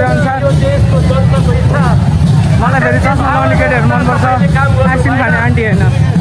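Loud chatter of a crowd, many voices talking and calling at once, over a steady low rumble.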